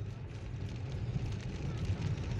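Car driving on a wet, rutted forest dirt track, heard from inside the cabin: a low rumble of engine and tyres that grows steadily louder, with light ticking over it.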